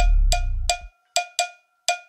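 Electronic dance track playing in a DJ mix: a short, pitched percussion hit repeats about three times a second over a deep bass note. The bass fades out just under a second in, leaving the percussion hits alone.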